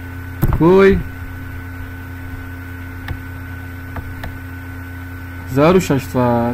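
Steady electrical mains hum on the recording, with a short voiced syllable about half a second in and another near the end, and a few faint clicks in between.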